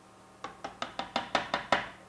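A metal spoon tapped rapidly against a container, about nine sharp clicks at roughly five a second, knocking ghee off into a food processor bowl of cooked cauliflower.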